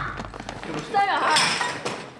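Speech: a voice crying out about a second in, its pitch falling.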